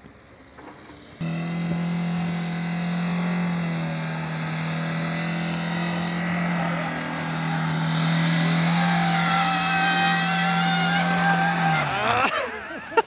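Maruti Suzuki Vitara Brezza's engine held at high, steady revs as the SUV pushes through deep mud. It comes in suddenly about a second in, holds an even pitch, and drops away just before the end.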